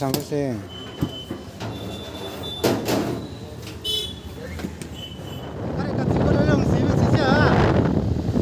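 A few short sharp clicks and knocks as a cover is stretched and fitted over a scooter seat, then, about six seconds in, steady wind noise on the microphone from a moving scooter, with voices over it.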